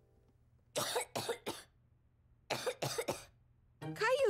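A young boy's voice coughing in two short fits of three or four coughs each, the first about a second in and the second near the end: the cough of a child sick with the flu.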